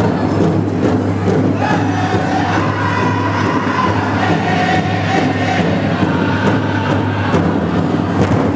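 A pow wow drum group singing, with high chanted vocals over a steady beat on a large shared drum, echoing in a gymnasium.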